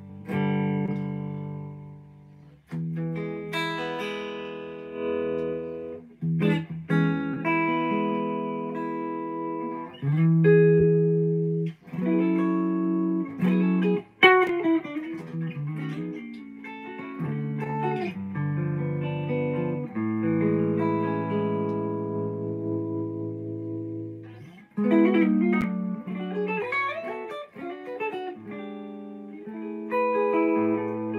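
Gibson Les Paul Custom Shop electric guitar played solo: a series of plucked chords, each left to ring for a second or two, with quick melodic runs and fills between them, a flurry of notes around the middle and again near the end.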